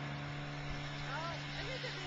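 Snowmobile engine idling steadily, a constant low hum, with faint talk over it.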